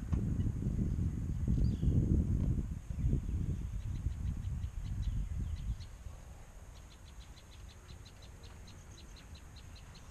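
Wind buffeting the microphone with an irregular low rumble that dies away about six seconds in, and a bird calling in a fast even run of short high chirps, about five a second, clearest near the end.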